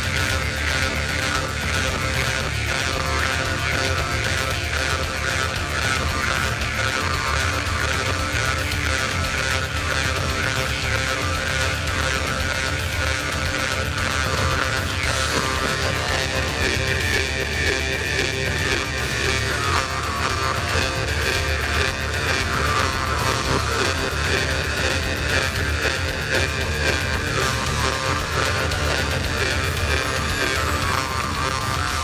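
Sakha (Yakut) khomus, a metal jaw harp, played into a microphone: a steady twanging drone whose bright overtone band slides up and down as the player reshapes her mouth.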